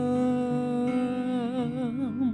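A woman singing a gospel song into a handheld microphone, holding one long note that is steady at first and then wavers with vibrato in the second half, over quiet instrumental backing.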